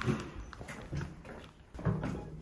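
Footsteps of sneakers on a hard stone floor: a few separate steps about a second apart.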